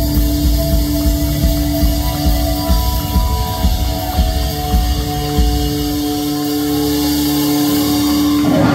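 Live rock band playing guitars, keyboard and drums, recorded from the audience. The drums drop out about six seconds in, leaving a held chord ringing.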